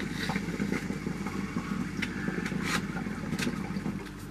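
Hookah water bubbling in the base as smoke is drawn steadily through the hose: a continuous low gurgle with a few sharper bubble pops.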